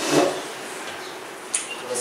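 A pause in a man's speech, with room tone between a brief vocal sound at the start and a sharp onset shortly before he speaks again at the end.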